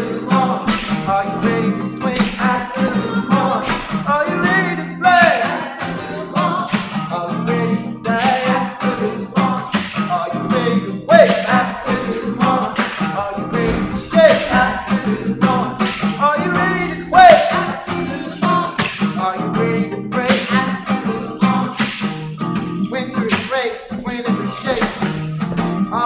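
Acoustic guitar strummed in a steady, driving rhythm, with voices singing along over it.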